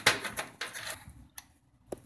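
Plastic clicks and knocks from a Cooler Master HAF 932 PC case being handled as its top front panel is taken off: a rattling cluster of knocks in the first second, then two single sharp clicks.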